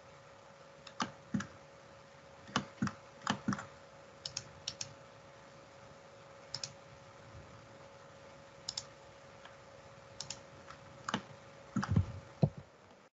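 Irregular clicks of a computer mouse and keyboard, many coming in quick pairs, as lines are picked one after another in a drawing program. A faint steady tone hums underneath.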